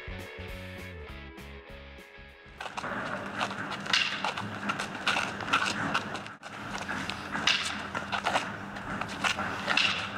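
A short run of music notes for about the first two and a half seconds, then footwork on asphalt: sneakers stepping and scuffing as two sparring partners circle each other, with many short sharp clicks and taps.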